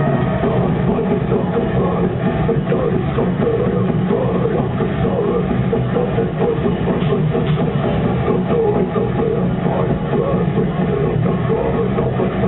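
A symphonic death metal band playing live at high volume: distorted guitars, bass, drums and vocals in one dense, unbroken wall of sound. It is heard from within the crowd and comes through muffled, with no treble.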